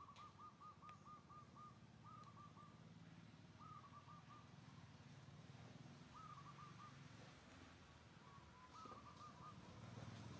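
Faint bird calling in short runs of quick, evenly repeated notes: a run of about eight at the start, then groups of three or four every couple of seconds, over a faint low steady background.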